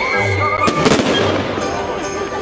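Fireworks bursting overhead: two sharp bangs in quick succession a little before one second in, with music playing.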